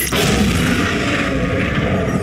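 Film-trailer sound design: a sudden loud boom-like hit that carries on as a dense, steady rumbling noise.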